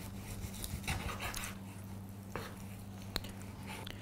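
Chef's knife slicing raw ribeye steak on a wooden cutting board: a few soft cutting strokes and one sharp tap of the blade on the board about three seconds in, over a faint steady low hum.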